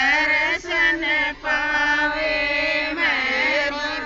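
A group of women singing a Haryanvi devotional folk song about the guru together, unaccompanied, in long held phrases with short breaks between lines.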